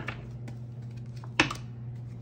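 Tarot cards clicking and tapping as the deck is handled in the hands: a few short, sharp clicks, the loudest about one and a half seconds in.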